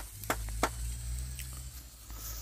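Wood fire crackling, with a few sharp pops in the first second or so from the embers and the vegetable stalks roasting in them.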